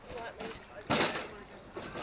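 Faint voices in the background, with a short burst of noise about a second in.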